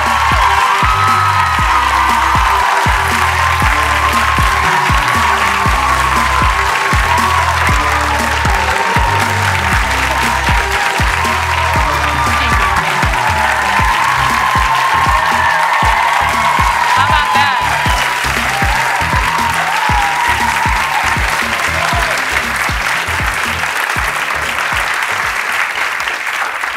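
A studio audience applauding and cheering, with upbeat show music with a steady bass line playing over it. The clapping eases slightly near the end.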